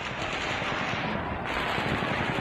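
Distant rapid-fire gunfire in one sustained burst, which the listeners take for two machine guns firing at once.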